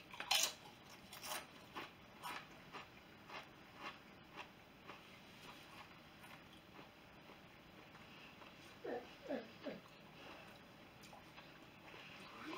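A tortilla chip being bitten and chewed with the mouth close to the microphone: a loud first crunch, then crisp crunches about twice a second that grow fainter over the first few seconds. About nine seconds in, three short hummed murmurs.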